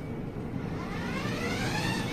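Electric motors of a 24-volt, four-motor children's ride-on buggy driven by remote control, whining as it moves off. The whine rises steadily in pitch from about half a second in as the buggy accelerates.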